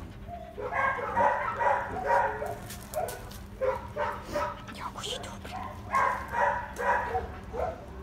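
Dogs barking in short, repeated calls, about two a second, with brief pauses between runs.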